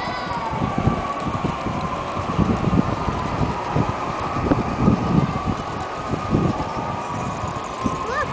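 Wind buffeting the microphone in uneven gusts, loudest in the middle, over a steady high whine that slowly wavers in pitch.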